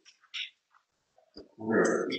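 A faint breath and a small click, then about one and a half seconds in a person's voice starts a drawn-out, wordless hesitation sound into the meeting microphone.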